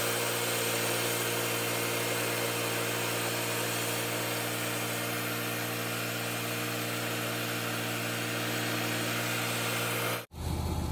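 Wood-Mizer portable band sawmill's Kohler gas engine running steadily under load while the band blade cuts through a log.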